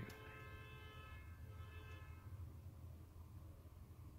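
A faint, light knock of metal on metal as a 3.5-inch hard drive is worked into its metal tray caddy. It rings on in several tones at once that fade out over about two seconds.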